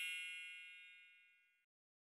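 The tail of a bright chime sound effect, many high ringing tones dying away steadily and gone by about a second and a half in.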